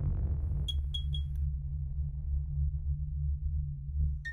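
Intro music for an animated logo: a steady low bass drone with three short high tones about a second in.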